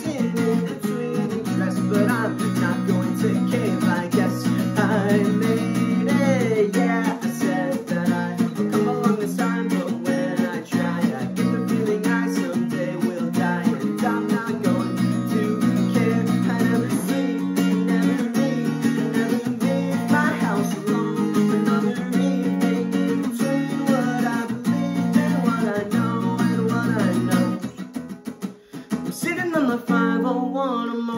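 Acoustic guitar strummed in a steady chord pattern, with a young man's voice singing over it. The playing drops away briefly near the end before picking up again.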